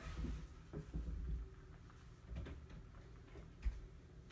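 Light handling noises of trading cards and their packaging: a few soft, scattered clicks and taps, the sharpest one near the end.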